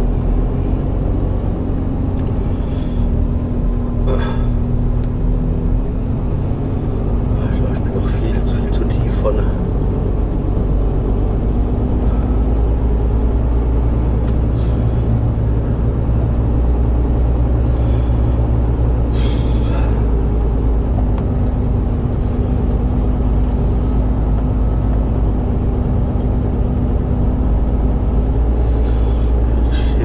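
Mercedes-Benz Actros SLT heavy-haulage tractor's diesel engine running as the truck rolls slowly, heard from inside the cab: a steady low drone that grows a little stronger partway through, with a few light clicks and rattles.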